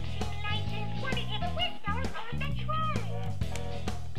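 Playskool Sesame Street Elmo toy train playing its song: Elmo's voice singing over a repeating bass line, with instrumental background music mixed in.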